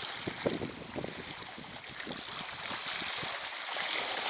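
Wind blowing on the microphone over the steady hiss of the open sea, with irregular low rumbles of gusts early on and the sea's hiss a little louder near the end.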